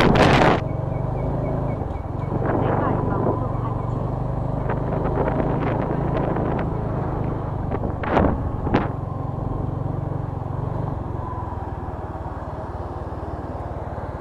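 Motorcycle engine running at low speed and then idling as the bike slows and stops. Wind rush on the microphone cuts off about half a second in. Two short, sharp noises come about eight seconds in.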